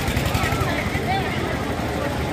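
Fairground din: a steady low rumble with indistinct crowd voices and a few faint high calls or shouts, while a spinning car ride runs.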